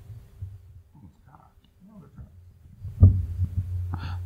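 Faint, indistinct murmuring voices over a steady low electrical hum on a podcast microphone, with a short louder low-pitched sound about three seconds in.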